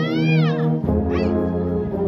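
Brass fanfare band of sousaphones and euphoniums playing loud sustained low chords. A high sliding tone rises and falls over the chord near the start, and a shorter slide follows about a second in.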